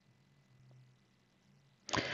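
Near silence with a faint low hum, then the narrator's short intake of breath near the end, just before he speaks.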